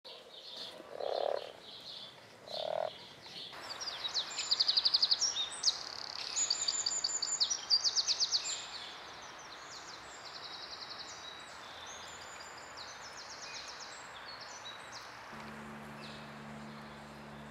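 A frog gives two short low croaks, then a songbird sings a run of loud, rapid, high trills. The song carries on more faintly over a steady hiss, and a low steady hum comes in just before the end.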